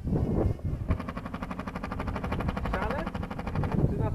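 A small motor running with a fast, even rattle. It starts about a second in and stops just before the end.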